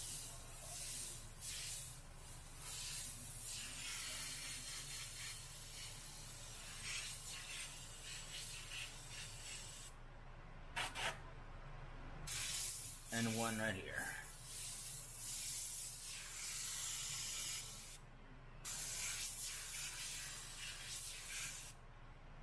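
Omni 3000 airbrush spraying pink paint: a hiss of air and paint that comes in long and short stretches as starbursts are sprayed. It stops for about two seconds some ten seconds in, with a couple of quick puffs, and stops briefly again near eighteen seconds.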